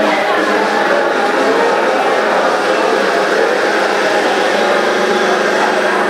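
Loud, steady mix of music and crowd chatter echoing in a large hall.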